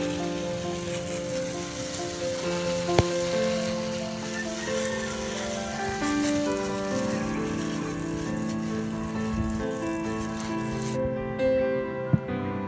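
Background music with slow held notes over a steady hiss from a hand-pumped pressure sprayer jetting water onto a plant's leaves. The hiss cuts off about a second before the end, and there is one sharp click about three seconds in.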